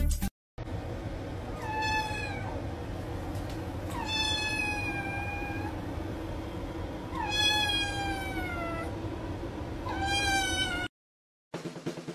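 Kitten meowing four times in high, drawn-out meows that each slide down in pitch; the middle two are the longest. Near the end, after a short silence, drum-heavy music starts.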